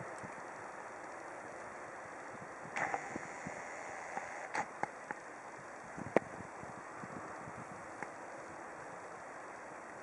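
Steady outdoor background noise with a few light clicks and knocks scattered through it, the sharpest about six seconds in.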